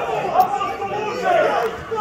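Voices talking continuously, chatter of several people rather than one clear speaker.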